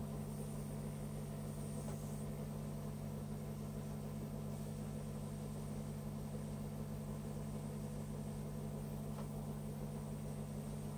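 Small airbrush compressor running with a steady hum, with a constant hiss of air.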